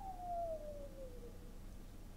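A man's long whistle of amazement: one pure tone sliding steadily down in pitch and fading out a little over a second in.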